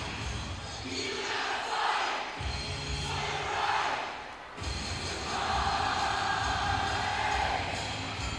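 Packed rock-concert crowd shouting and cheering over music, with drawn-out group shouts or chanting.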